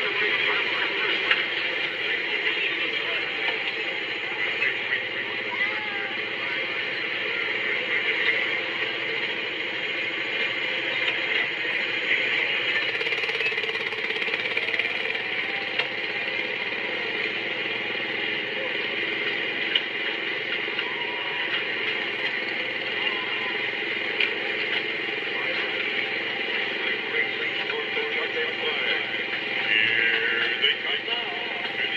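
Small gasoline engine of a go-kart-style theme-park ride car running steadily as the car drives along the track. It is heard played back through a tablet's speaker.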